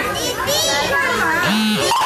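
Several children's voices talking and chattering over one another.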